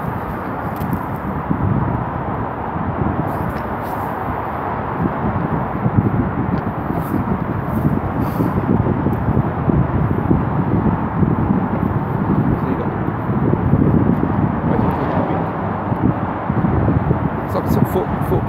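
Wind buffeting the microphone: a steady, rough rumble.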